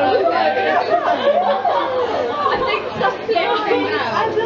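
Several young women chattering and talking over one another around a table, with no single voice clear.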